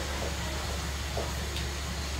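A low, steady hiss and hum from a pan of diced zucchini, onion and tomato cooking on a gas hob, with a few faint soft sounds of a spoon stirring the vegetables.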